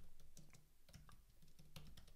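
Faint, irregular keystrokes on a computer keyboard, several a second, as a command is typed in.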